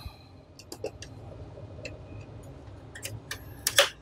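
Sharp metallic clicks and ticks of a screwdriver and fingers working the screws and riser of a network daughter card inside a Dell R720 server chassis: a few scattered clicks, then a cluster with the loudest near the end. A steady low hum runs underneath.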